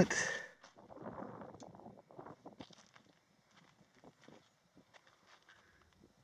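Faint scuffing and crackling for about the first two seconds, then near silence.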